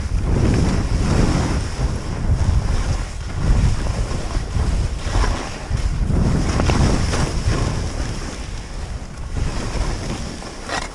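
Skis hissing and scraping through chopped-up snow on steep turns, a surge every second or two, under heavy wind noise buffeting the camera microphone.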